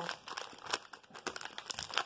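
Wrapper of a Topps Gallery baseball card pack crinkling irregularly as it is handled and opened.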